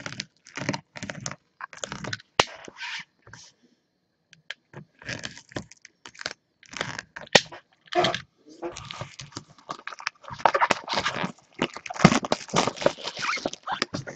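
Plastic wrapping crinkling and tearing as a sealed cardboard box is unwrapped and handled, in an irregular run of rustles and crackles that is busiest near the end.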